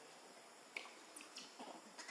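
Near silence with a few faint, sharp clicks a little under a second in and shortly after.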